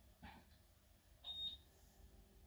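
A single short, high electronic beep about a second in, over near silence, with a soft breath shortly before it.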